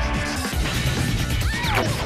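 Show intro jingle: loud music with cartoon sound effects, including a falling and a rising pitch glide about one and a half seconds in.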